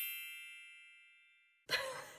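Bright chime sound effect over dead silence, ringing in many high tones and fading steadily until it cuts off suddenly near the end, when music starts.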